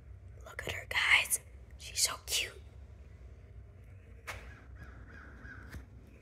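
A person whispering briefly, twice, about a second and two seconds in, over a low steady room hum, with a sharp click about four seconds in.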